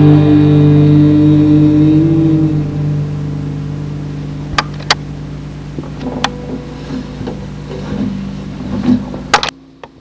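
A distorted electric guitar chord rings out and fades over the first few seconds, leaving a steady low amplifier hum. Several sharp clicks and pops follow, and the sound cuts off suddenly just before the end.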